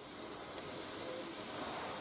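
Flour-coated squid rings sizzling in hot oil in a frying pan as they are tipped in, a steady even hiss.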